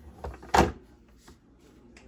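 A single sharp knock about half a second in, with a few faint clicks around it: handling noise from parts being fitted inside a refrigerator.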